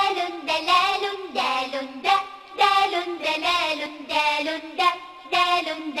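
Children's song about the Arabic letter dal, sung in a child's voice to a melody in short repeated phrases.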